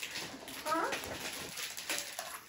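A toddler's brief high-pitched vocal sound, a short squeak-like cry about a second in, over light rustling as toys and packaging are handled.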